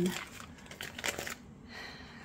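Thin holographic plastic window film crinkling as it is handled and cut with small scissors, a cluster of crackly snips about a second in.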